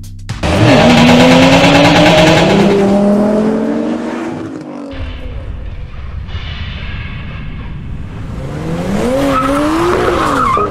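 Car engine sound effect: a sudden hard launch, with the engine revving up in rising pitch over tyre screech, fading after a few seconds. Another rising rev comes near the end.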